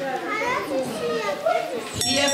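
Children's voices chattering.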